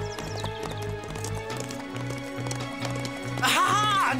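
Cartoon chase music with a steady low beat, over the sound of horses' hooves galloping. Near the end a horse gives a loud whinny.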